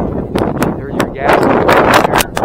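Wind buffeting the microphone on an open boat in choppy water, loud and uneven in gusts with rapid crackles.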